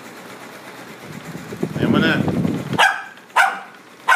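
Lhasa Apso, a small dog, giving two short, sharp barks about half a second apart near the end.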